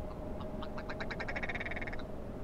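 A dry rattling animal call: a few separate clicks that speed up into a fast buzzy rattle, cutting off abruptly at the end.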